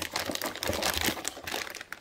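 Clear plastic packaging crinkling and rustling as it is handled, a dense run of small crackles.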